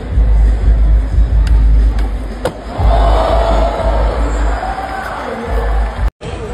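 Arena music with a heavy bass over crowd noise and cheering that swells about halfway through, with two sharp knocks about a second apart in the first half.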